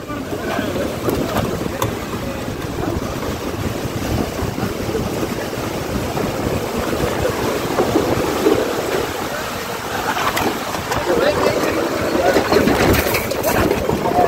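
Heavy rain and strong storm wind, gusts buffeting the phone's microphone with a constant rumble and hiss.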